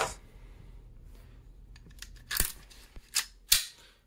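Sharp metallic clicks as an AR-15 upper receiver's spring-loaded ejection port dust cover is worked open, three clicks in the second half with the loudest near the end.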